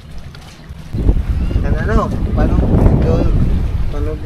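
Wind buffeting the microphone, a low rumble that starts about a second in, with voices talking under it.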